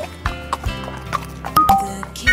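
Cartoon sound effect of a horse's hooves clip-clopping, a few separate knocks, over an instrumental children's music backing.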